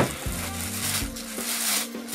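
Clear plastic bag crinkling around an LED par light as it is lifted out of its cardboard box and handled.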